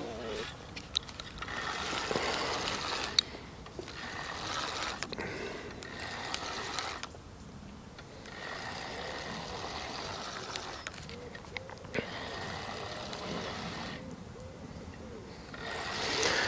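Fixed-spool fishing reel being wound in several spells of a second or more, with short pauses between and a few sharp clicks, as a hooked fish is reeled in.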